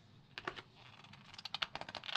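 Fingers handling glossy magazine paper: a couple of light paper clicks about half a second in, then a quick run of small crinkling ticks near the end as the corner of a page is gripped to turn it.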